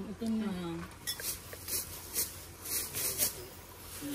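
Tableware being handled: a quick run of six or seven light clinks and scrapes over a couple of seconds, after a short word.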